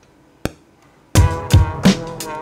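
A single short click about half a second in. About a second in, a boom-bap beat starts playing from an Akai MPC One: kick and snare drums under chopped trumpet sample chords.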